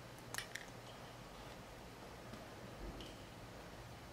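Faint, quick sharp clicks about half a second in from small cutting pliers snipping at the strands of a Cat 5e UTP cable, followed by faint handling of the tool and wire.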